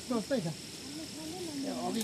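People talking, with a steady faint high-pitched tone running underneath.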